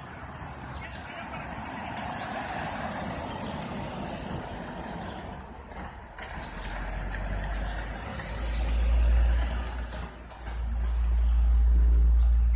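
A minivan driving past on the road, its tyre and engine noise swelling and fading over the first five seconds. Then a deep low rumble swells twice, the loudest sound here.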